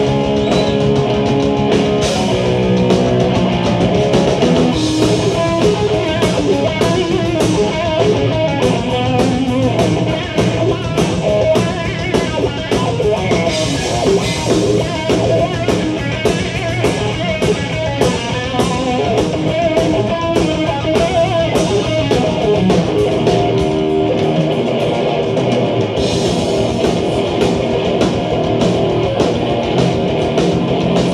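Heavy metal band playing live: electric guitars and bass over a fast drum kit beat. The bass and kick drum drop out for about two seconds near the end.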